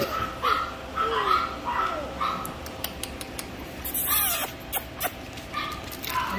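Goldendoodle puppies giving short, high-pitched cries that slide down in pitch, several in quick succession in the first two seconds and a louder one about four seconds in.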